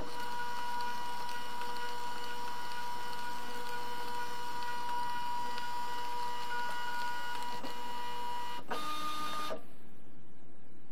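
Zebra 220Xi3 Plus thermal-transfer label printer's drive motor running as it feeds labels through and prints a sensor profile, the test of whether the top and bottom gap sensors can see each other. A steady whine shifts pitch briefly near the end, then stops.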